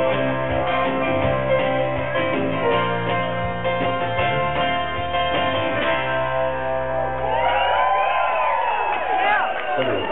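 Live band playing a song's closing bars: strummed acoustic guitar over bass and drums. The last chord is held and dies away about seven seconds in, and the crowd whoops and cheers over it.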